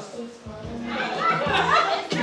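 Background music under a group of people talking over each other, the voices growing louder from about a second in.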